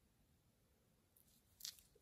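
Near silence, broken by one short faint click near the end: the C pushbutton on a Casio MRG-G1000 watch being pressed.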